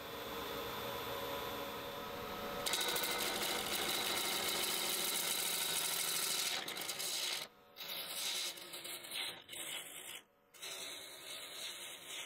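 Robust wood lathe spinning a cherry burl and epoxy blank with a steady motor hum. About three seconds in, a gouge starts cutting the spinning piece, a steady scraping hiss of shavings coming off, which breaks off several times in the second half.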